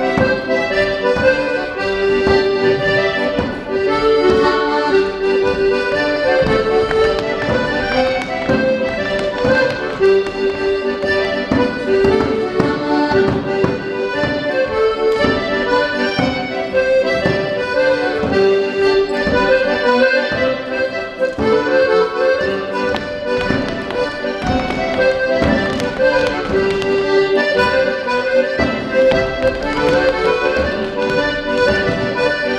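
Accordion playing a lively traditional dance tune, with a drum beating time.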